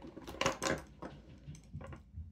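Light clicks and taps of fountain pens knocking against each other and against a wooden desktop as they are set down side by side. The loudest clicks come in a quick cluster about half a second in, with a few fainter taps later.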